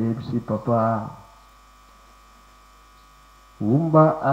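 A man's voice speaking into a handheld microphone for about a second. Then a pause of about two and a half seconds where only a steady electrical hum is heard, and his voice starts again near the end.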